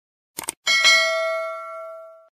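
Two quick mouse-style clicks, then a bright bell chime of several tones that rings out and fades over about a second and a half: the click-and-ding sound effect of an animated YouTube subscribe button and notification bell.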